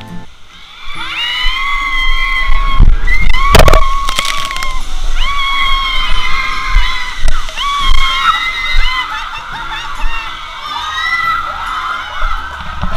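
Riders screaming hysterically through a ride's drop in the dark: several long, high-pitched screams held and wavering together, broken by a couple of sharp bangs about three and a half to four seconds in.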